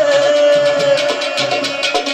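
Live Pothwari folk music: a singer's long held note, gliding slightly down, ends about a second in. Sitar and drum accompaniment with a steady beat carries on beneath it.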